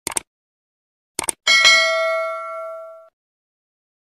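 Subscribe-button animation sound effect: a quick double mouse click, another double click about a second later, then a single notification-bell chime that rings and fades over about a second and a half.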